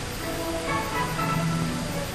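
Background film music: a few sustained notes held together, changing to a lower chord about a second in.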